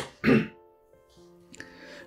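A person clearing their throat once, a short rasp near the start, over soft steady background music.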